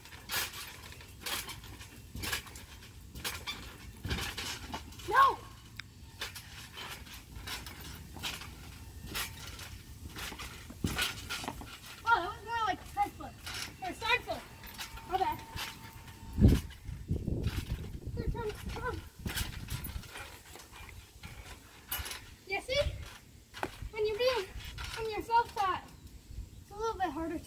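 Repeated bouncing on a trampoline, the mat and springs taking landings about once a second, with one heavier low thump about halfway through as a front-flip attempt lands.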